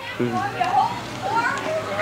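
Young children's voices and chatter with a laugh, over a general crowd babble.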